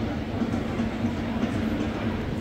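Steady low rumble of stadium background noise, with a faint steady hum and no single event standing out.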